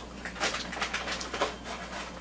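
Close mouth sounds of a man eating a spoonful of soft, ripe mamey sapote: wet chewing and lip smacks, with a short hum about one and a half seconds in.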